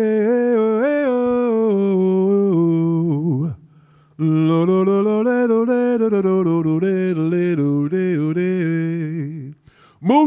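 A solo voice singing a slow, wordless melody, unaccompanied, in two long phrases with a brief pause a little over three seconds in.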